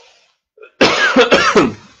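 A man's short fit of coughing to clear his throat: several rough coughs run together, starting a little under a second in and lasting about a second.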